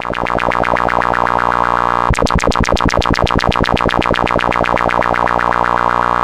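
Modular synthesizer tone through a bandpass filter whose cutoff is switched rapidly, about ten times a second, by a square-wave LFO from an Erica Synths Black LFO module. About two seconds in, the pulsing suddenly becomes much brighter and stronger, then fades back slowly over a few seconds as the LFO's built-in envelope and VCA run a long decay on the modulation depth.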